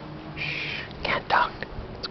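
A person whispering a few words close to the microphone.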